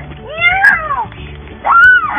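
A young girl's voice wailing twice for a crying doll: two high, drawn-out cries that rise and then fall in pitch, the second one louder.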